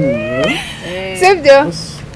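A person's voice making drawn-out, wavering vocal sounds that bend down and up in pitch, a cat-like whine or exclamation rather than clear words, with a short burst of speech about three-quarters of the way through.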